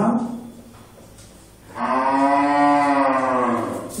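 A cow mooing once: a single long, low call of about two seconds that rises slightly in pitch and then falls, starting a little under halfway through.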